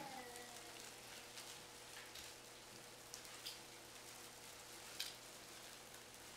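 Faint room tone broken by a few scattered small clicks, the loudest about five seconds in: small communion cups being set down in their trays and holders as a congregation takes the cup.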